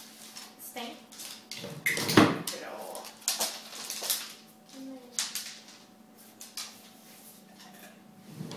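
A wooden drawer pushed shut by a bull terrier's paw, a loud knock about two seconds in, among scattered short clicks and taps.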